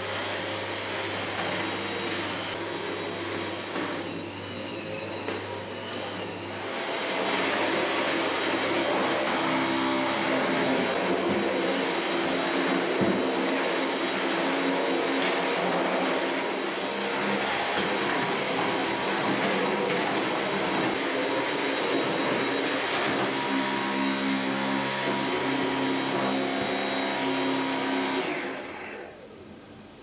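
Dyson cordless stick vacuum cleaner running, a steady motor whine with suction noise. It gets louder about six or seven seconds in and switches off a couple of seconds before the end.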